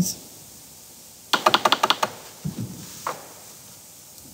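Laptop keyboard keys pressed in a quick run of about ten clicks lasting under a second, followed by a few fainter taps.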